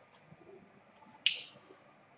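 A whiteboard marker on the board: one sharp, short plastic click a little over a second in, with a fainter tick near the start, as the marker finishes a graph sketch.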